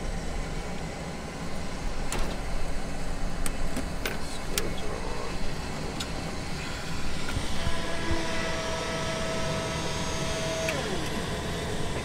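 Cirrus cockpit with its electrical and avionics systems just switched on: a steady hum with a few sharp switch clicks, and a steady whine that comes in about two-thirds of the way through and falls away near the end.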